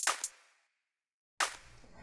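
Two sharp swish-and-hit sound effects of a title intro, one at the start and another about a second and a half in, each dying away quickly. A faint low room hum follows the second.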